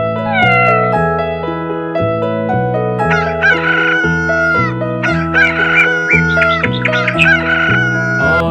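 A rooster crows three times, each a long call ending on a held note, over light keyboard music with a bass line. Just after the start comes a short falling meow from a cat.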